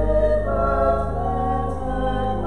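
A hymn sung by voices over a steady low accompaniment, with held notes changing every half second or so.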